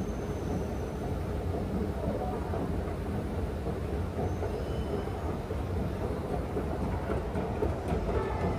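Steady low rumble and hum of an underground metro station, heard while riding an escalator down to the platform, with a few faint high whines.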